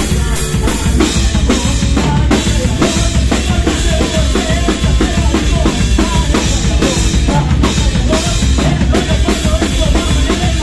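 Live rock band playing loud: a drum kit keeps a steady driving beat under electric bass and electric guitar, with a male singer's voice over the top.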